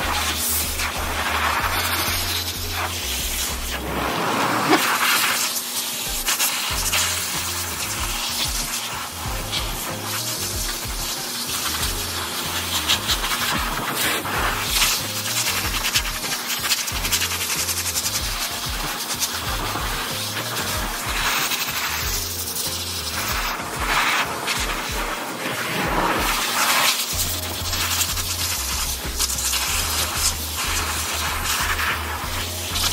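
Background music with a pulsing bass line that drops out briefly about four seconds in and again near the end.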